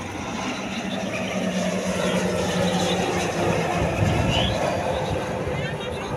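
Grob G 120TP trainer's turboprop engine and propeller droning as the aircraft flies past, a steady hum that swells to its loudest about four seconds in.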